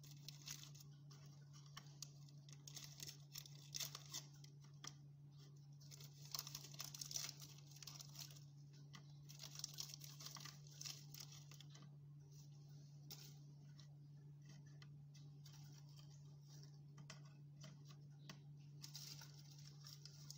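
Plastic packet crinkling and tearing as it is opened and handled, in irregular bursts that thin out about twelve seconds in and pick up again near the end, over a low steady hum.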